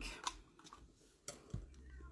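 Faint soft taps and rustling of cotton fabric pieces being shifted and pressed flat by hand on a cutting mat, with a few light clicks in the second half.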